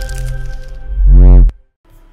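Podcast intro music sting: a held chord fades, then a loud swelling whoosh rises and falls in pitch and cuts off suddenly about one and a half seconds in.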